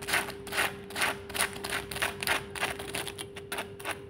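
Crispy battered fried tofu fritters crunching: a quick run of crisp crackles, about two to three a second, that stops just before the end. A faint steady hum runs underneath.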